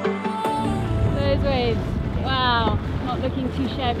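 Background music cuts off about half a second in, giving way to a small boat's motor running under way, with wind buffeting the microphone. Voices exclaim over it, one long rising-and-falling call in the middle.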